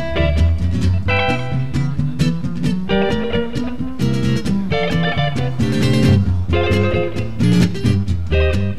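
Electric guitar playing a jazz tune live, a mix of chords and picked single-note lines, with a bass line underneath.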